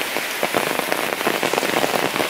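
Rain falling steadily on a paved lane, a dense, even patter of drops.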